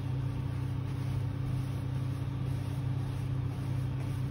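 Steady low machine hum from room equipment or ventilation, even in level throughout.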